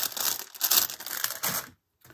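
Thin clear plastic bags of balloons crinkling as they are handled, a dense crackle that cuts off suddenly near the end.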